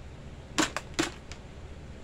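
Sharp clicks of small hard objects being handled: two loud ones about half a second and a second in, with a fainter one between, over a steady low hum.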